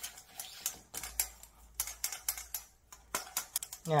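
A metal fork tapping and scraping in a stainless steel bowl in quick, irregular clicks as it cuts egg into a flour-and-sugar crumble.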